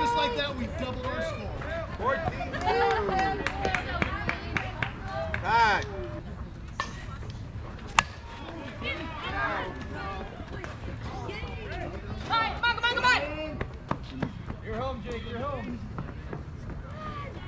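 Players' voices shouting and calling across a softball field, with a single sharp crack of a bat hitting a softball about halfway through.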